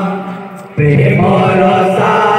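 Male voices of a kirtan group chanting together on long held notes. The first note fades away, and about three-quarters of a second in the group comes back in loudly on a new line and holds it.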